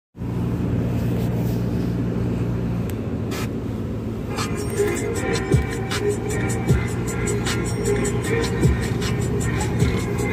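Music playing on the car radio inside a moving car, over the car's road hum. A beat comes in about four seconds in, with quick ticking hi-hats and sliding bass notes.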